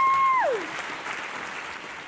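Audience clapping and cheering. A long held whoop slides down and stops about half a second in, and the applause then fades away.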